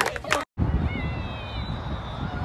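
Outdoor field ambience: a steady low rumble of background noise with a faint, distant high-pitched call that falls slightly in pitch about a second in. It follows a spectator's shout and a brief dropout at a cut.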